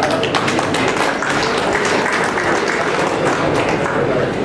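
A group of people applauding with steady hand-clapping.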